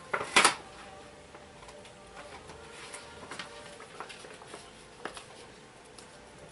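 A plastic aquarium background film being handled and pressed against the back glass of a tank: one short, loud rustle about half a second in, then faint scattered taps and rustles.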